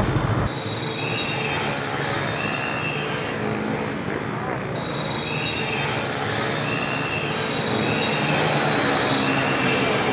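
Motorbike engines and road noise heard from a moving motorbike, with short high squeals recurring every second or so.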